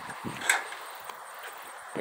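A person's footsteps on a paved path, with one sharper step about half a second in, over a faint steady outdoor hiss.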